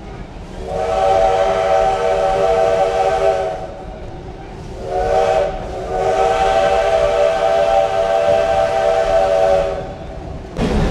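Steam locomotive's chime whistle blowing several notes at once, heard from a passenger coach: a long blast, a short one, then another long blast.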